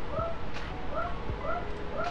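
A small animal's short, high calls, about four in quick succession, each rising and then falling in pitch.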